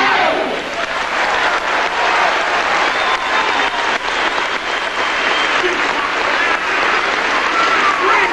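Theatre audience applauding right after the orchestra and chorus finish a musical number, the music stopping just as the applause takes over.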